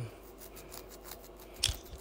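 Flexi rod and locs rustling and crackling as a rod is worked loose from the hair by hand: a run of faint quick clicks, then a louder brief rustle near the end.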